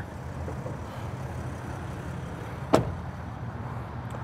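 A Mercedes-Benz Sprinter van's driver's door shutting once, a single sharp slam about three-quarters of the way through, over a steady low background hum.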